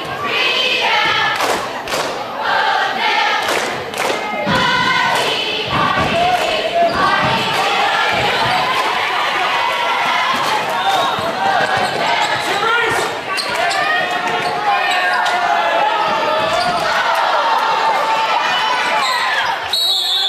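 A basketball bouncing on a gym's hardwood floor during a girls' high-school game, heard against steady voices from the crowd and cheerleaders. There are several sharp bounces in the first few seconds.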